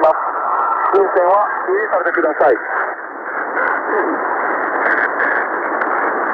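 Shortwave broadcast from a Japanese fisheries coast radio station received on a Tecsun PL-880 portable: a weak male voice reading a bulletin of positions under steady static, narrow and muffled. The voice sinks into the hiss about halfway through and is barely heard after that.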